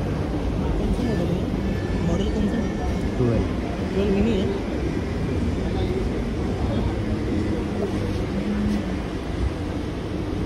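Mumbai suburban electric local train running, a steady rumble and rattle heard from inside a crowded coach by its open doorway, with passengers' voices over it.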